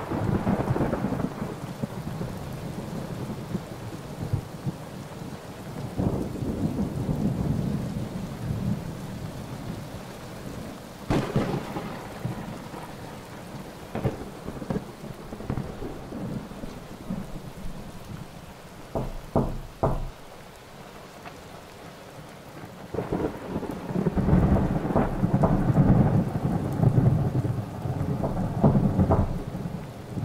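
Thunderstorm: low rolling rumbles of thunder that swell and fade, loudest near the end, broken by several sharp cracks, three of them in quick succession partway through.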